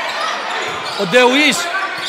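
Indoor volleyball rally: hall noise from the crowd and the thud of the ball being played, with a commentator's voice coming in about a second in.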